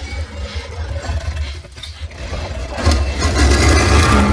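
Film soundtrack: a deep, continuous rumble with a haze of higher noise over it, swelling louder about three seconds in.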